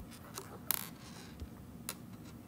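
A few light taps and clicks, with one short scratchy sound partway through, from input being entered on a touchscreen, over quiet room tone.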